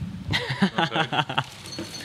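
A man laughing in quick, choppy pulses, then a faint metallic ring near the end.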